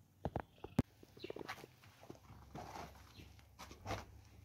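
Dry split sticks and palm-frond strips being laid and pushed onto a small smoking wood fire: a few sharp wooden knocks in the first second, then bouts of dry rustling and crackle.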